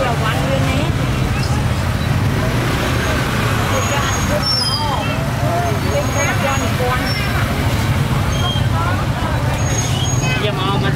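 Busy open-air market: several people talking over a steady low rumble of traffic engines.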